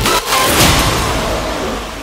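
Hardstyle track near its end: the heavy kick and bass stop, and a whooshing noise-sweep effect fades away over the two seconds.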